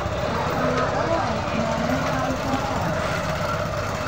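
An engine running steadily, with a low, fast pulsing rumble, under indistinct voices.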